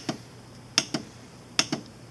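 Two clicks about 0.8 s apart as the kVp down push button on the AMX 4 X-ray generator's control panel is pressed to step through the service-mode menu.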